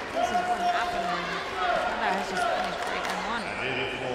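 A voice speaking over a steady murmur of an indoor arena crowd.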